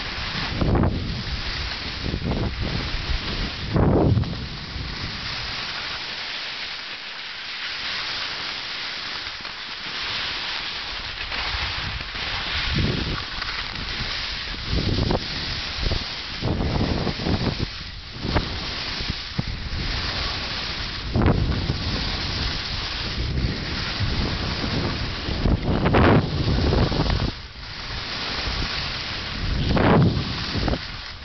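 Wind buffeting the microphone during a fast ski run, with repeated low gusts every second or two over a continuous hiss of skis sliding on snow.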